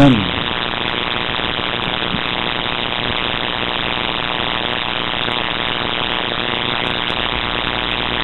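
Steady hiss with a faint hum: the noise of the amplified sound and recording chain with no one speaking into the microphones.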